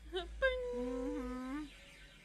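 A woman humming a few notes: a short wavering note, then a held hum of about a second that steps up in pitch twice before stopping.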